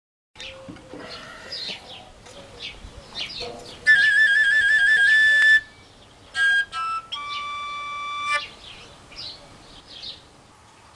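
Koncovka, the Slovak overtone flute without finger holes, playing a short phrase. About four seconds in comes a high note trilled quickly against a slightly lower one, then a few short notes, then one held lower note, with faint chirps before and after.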